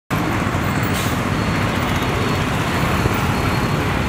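Steady road traffic noise: engines and tyres of buses and cars passing on the surrounding roads.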